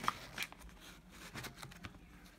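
Rustling and crinkling of a plastic microphone packaging pouch being handled and opened, with a couple of sharper crinkles near the start and fainter rustles after.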